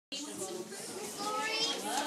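Indistinct chatter of many young children talking over one another.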